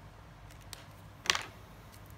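Marker pens being handled on a desk: one sharp click a little past the middle, with a fainter tick before it.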